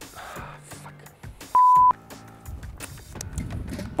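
Quiet background music, broken about one and a half seconds in by a single short, loud beep of one steady pitch: a censor bleep replacing a spoken word.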